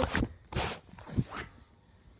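Camera handling noise: a short scraping rustle about half a second in, then two light knocks, as the camera is picked up.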